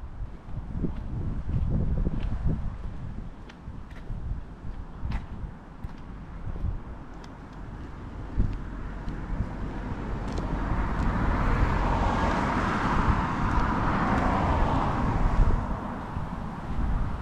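Wind rumbling on the microphone, and a car passing on the road in the second half, its tyre noise swelling from about ten seconds in and fading near the end.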